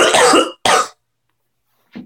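A man coughing: one long cough running into the first half second, then a second short cough, with a brief sound right at the end.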